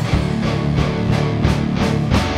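Three-piece rock band playing an instrumental passage: electric guitar, electric bass and a drum kit keeping a steady beat.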